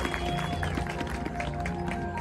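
High school marching band playing: a loud held chord breaks off right at the start, and the band goes on with quieter sustained notes over light percussion ticks.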